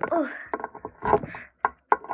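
Hard plastic toy figures being handled and knocked together close to the microphone: a few sharp clicks and knocks, the last two about a quarter of a second apart near the end.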